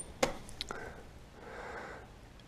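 A sharp metallic click, then two fainter ticks, from the cast-iron wood stove's door handle being latched shut.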